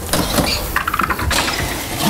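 Interior door being opened by its handle and walked through, with a steady rustle and low rumble of movement.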